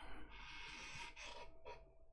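A man's stifled, breathy laugh: a faint rush of breath lasting about a second, then a shorter breath near the end.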